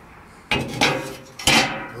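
A piece of steel checker plate clanking against the sheet-steel body of a sauna stove as it is offered up into place: three metallic knocks with a ringing tail, about half a second, just under a second and a second and a half in, the last the loudest.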